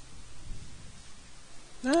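Faint steady hiss of room tone with no other sound, then a voice starts speaking near the end.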